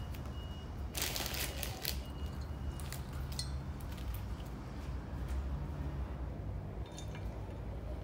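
Potting soil being scooped and pressed into a small plastic plant pot by gloved hands: soft rustling and crunching, with a louder rustle about a second in and a few light clicks later, over a steady low hum.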